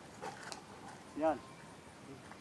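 Faint, brief scuffs of a man's feet shifting on dry, leaf-strewn dirt as he steps and turns through a shadow-boxing move, followed about a second in by a single short spoken word, the loudest sound.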